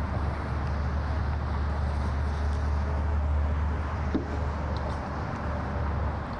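Steady low rumble of outdoor background noise, with a single light knock about four seconds in.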